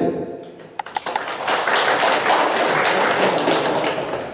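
Audience applauding in a hall, a dense patter of clapping that starts about a second in after a few sharp taps and keeps up steadily.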